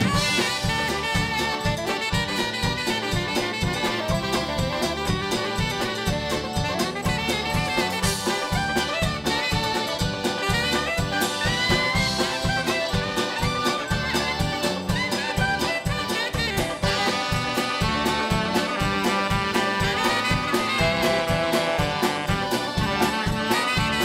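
Live polka band playing an instrumental passage: saxophones carry the tune over accordion and drums, which keep a steady beat.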